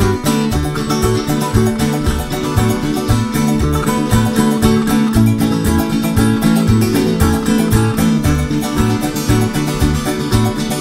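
Instrumental passage of a string-band song: rapidly plucked and strummed guitars over a steadily stepping bass line, with no singing.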